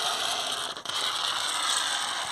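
A pressurised pump-up DPF cleaner dispenser venting through its nozzle: a steady hiss of escaping air spitting foamy cleaner, with a brief dip a little under a second in. The dispenser has run out of fluid, so it is mostly the remaining pressure blowing off.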